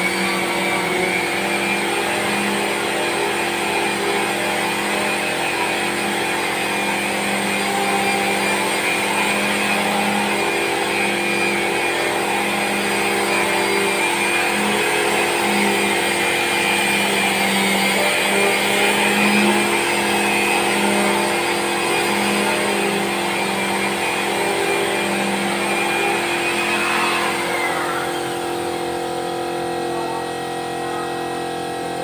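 An electric power tool's motor running steadily with a high whine, its load rising and falling; about three seconds before the end it is switched off and winds down with a falling whine.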